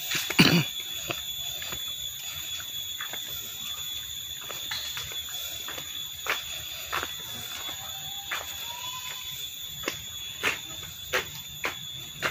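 Irregular clicks and taps, as from footsteps and handling of a phone carried along a paved path, over a steady high-pitched whine. The loudest click comes about half a second in, and several more near the end.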